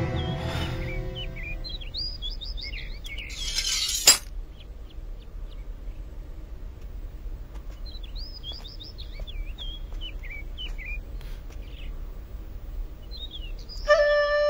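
Birds chirping in short bursts of quick rising and falling calls, as a drama's outdoor background. About four seconds in, a brief loud hiss ends in a sharp crack; music fades out at the start.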